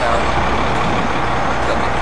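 Steady low rumble and hiss of a large engine running, with no change through the stretch.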